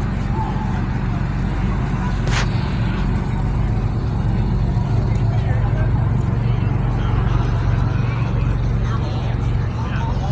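Crowd noise of a busy convention hall: indistinct voices over a steady low rumble, with one brief sharp sound about two and a half seconds in.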